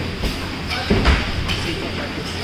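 Two grapplers shifting on a foam wrestling mat: rustling body movement with a soft thump about a second in, over a steady low background hum.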